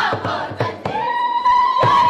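A girls' group singing a Borana folk dance song over a rhythmic beat; about a second in, one long high note starts and is held.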